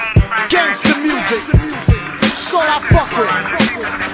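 Hip hop track: a rapper's voice over a beat with a deep, heavy kick drum hitting every half second or so.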